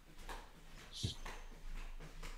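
Faint scattered knocks and rustling of a person moving about a small room, with one soft thump about a second in.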